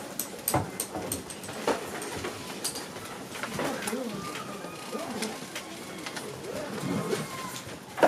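Classroom handling noise: notebooks and papers being moved, with scattered sharp knocks and clicks from desks. Low murmured voices come and go through the middle of it.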